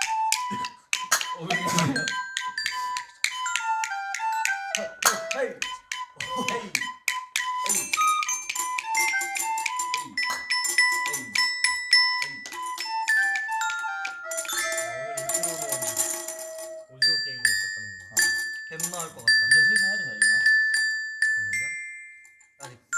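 An amateur toy-instrument jam: a recorder plays a simple stepping melody, backed by tambourine and a small mallet-struck percussion instrument. From about three-quarters of the way in, higher ringing mallet notes take over from the recorder.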